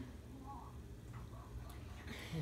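Faint chewing and small mouth clicks from people eating frosted donuts, with a brief murmur about half a second in, over a low steady hum.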